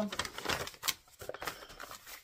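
Paper sheet being handled and rustled, an irregular run of quick crinkling clicks, busiest in the first second.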